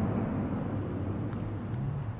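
Steady outdoor background noise with a low hum and no distinct events.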